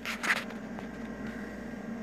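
A brief rustle of handling noise near the start, then a low steady hum of background noise.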